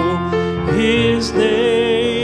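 A man singing a slow hymn into a microphone with instrumental accompaniment. After a short breath between phrases, he comes in under a second in on a long held note.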